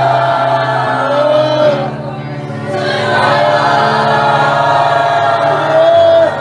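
Group of worshippers singing a slow worship song together over keyboard-led band accompaniment, with a brief dip in loudness about two seconds in.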